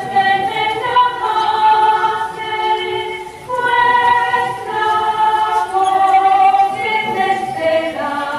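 A choir singing a slow hymn in long held notes, with a short break between phrases about three and a half seconds in.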